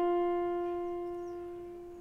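Yamaha portable keyboard holding a single F note, the upper note of the E–F semitone, which dies away slowly.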